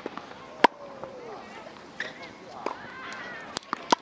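Tennis ball being hit back and forth and bouncing on an outdoor hard court: a series of sharp pops from racket strikes and bounces, the loudest about half a second in and a quick cluster of three near the end.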